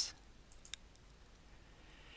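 A faint computer mouse click, one sharp tick a little under a second in, preceded by a couple of fainter ticks, over quiet room tone.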